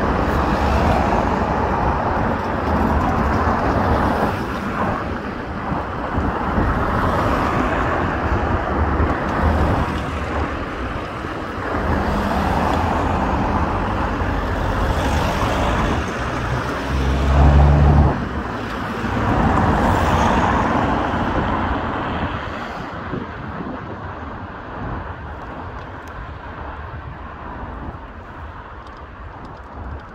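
Road traffic driving past: a continuous wash of car noise, with a louder low rumble from a heavier vehicle passing close a little past halfway. The traffic thins and quietens over the last several seconds.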